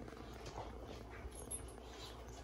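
Cat lapping tuna juice from a glass bowl: faint, irregular soft wet clicks of the tongue.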